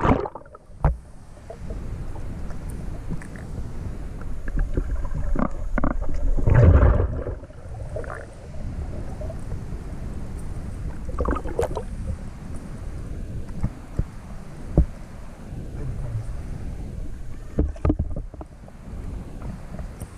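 Muffled underwater sound heard through a GoPro's waterproof housing as a swimmer moves through a submerged rock tunnel: a low rumble of moving water with scattered knocks and clicks, and a louder surge about seven seconds in.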